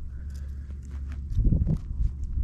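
Footsteps on sandy desert ground with small crunching clicks, and a heavier low thump about one and a half seconds in, over a steady low rumble of wind on the microphone.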